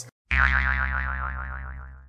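Cartoon 'boing' sound effect: a twangy tone that wobbles up and down in pitch, starts suddenly and fades out over about two seconds.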